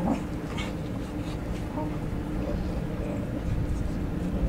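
Two English Cocker Spaniels play-fighting, making short dog sounds in several brief bursts, the strongest right at the start and again about half a second later, over a steady low background rumble.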